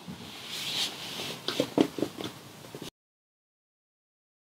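Plastic clamp pieces sliding and clicking against a metal tube as they are shifted into position, a few short knocks about one and a half to two and a half seconds in. The sound then cuts off abruptly to total silence.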